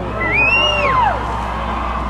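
A large crowd cheering after a line of a speech, with one voice whooping in the first second, a call that rises and then falls away.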